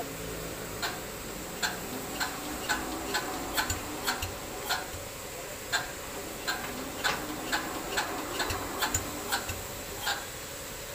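Irregular sharp clicks, roughly two a second, from hands working at a concrete mixer's small diesel engine, over a steady low background.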